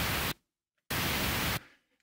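Pink noise played back from Pro Tools with no fade-in, so it starts instantly at full level with a super sharp, knife-edge attack. One burst cuts off about a third of a second in, and a second starts abruptly near the one-second mark and stops about 0.7 s later.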